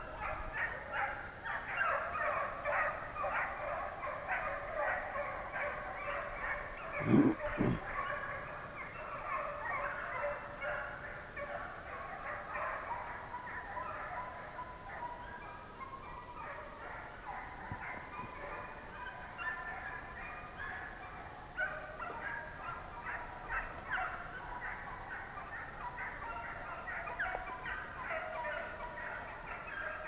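A pack of deer hounds baying and barking on a running trail, many short overlapping calls throughout. A brief louder low sound comes about seven seconds in.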